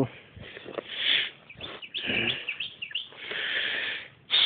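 A few short bird chirps about halfway through, with brief sniffs close by.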